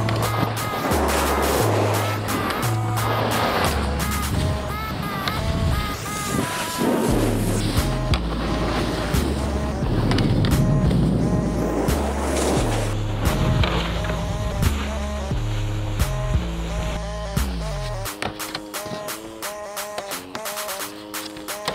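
Electronic music with a stepping bass line and a steady beat, overlaid by several bursts of scraping as snowboards slide across terrain-park boxes. The bass drops out about two seconds before the end.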